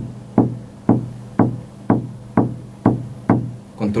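Eight sharp knocks on a desk at an even pace of about two a second, each ringing briefly. They sound out the dots of a poem printed only as dots, which stand for the bullet holes of an executed man.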